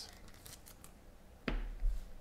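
Handling noise as a trading card is put back down: two short knocks on the table near the end.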